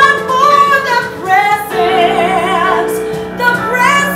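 Live female lead vocal with vibrato on long held notes, over sustained keyboard chords.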